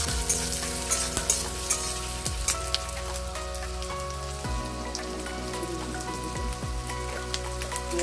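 Sliced onions and green chillies sizzling and crackling in hot oil in a metal kadai. A flat spatula scrapes and clicks against the pan in the first couple of seconds, then the frying goes on alone.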